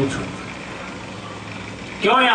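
Steady background noise, an even hiss and rumble with a faint low hum, after the tail of a spoken word at the very start.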